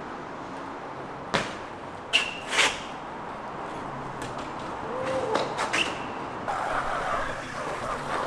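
BMX bike landing tricks on pavement: several sharp impacts, two of them with a short high metallic ring, over steady street background noise.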